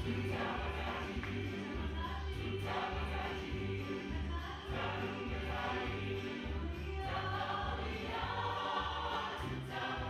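Gospel choir music: voices singing together over a steady, repeating bass beat.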